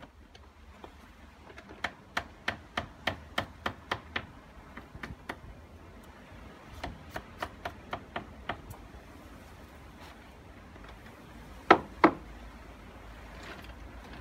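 Hammer driving nails into timber: a run of about ten quick strikes about three a second, a second run of about seven, then two much louder blows near the end.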